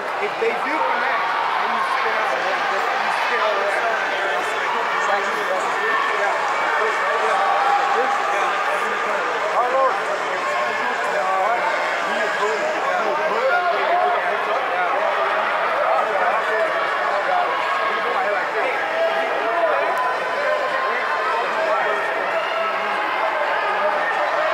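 Steady hubbub of many overlapping voices, with people talking and calling out at once and no single voice standing out.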